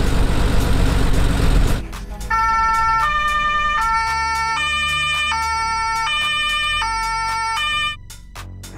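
Loud engine and road rumble for the first couple of seconds, then a two-tone police siren alternating between a high and a low note about every three-quarters of a second until the end.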